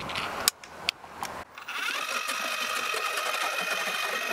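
A few sharp clicks, then the ION 40-volt electric ice auger's motor starts about a second and a half in and runs with a steady whine. The auger is spinning in reverse in the freshly drilled hole, pushing the slush back down.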